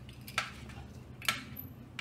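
Light metallic clicks and clinks as a metal spring scale is handled and set against nails in a plywood board, one clear click about half a second in and another past a second.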